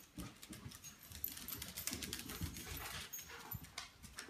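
Dogs moving about on a hardwood floor: irregular clicking of claws and scuffing of paws.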